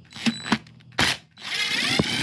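Cordless DeWalt impact driver backing out a T27 Torx screw: short bursts on the trigger, then a longer run from about halfway through with a rising whine.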